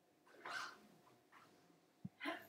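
Near silence: room tone, with a faint, short, soft sound about half a second in and a fainter one a little after a second.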